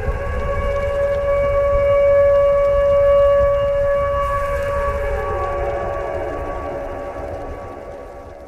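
Closing of an electronic trance track: after the beat stops, a held synthesizer chord rings on and swells. About halfway through, part of it sweeps downward in pitch, and it fades out toward the end.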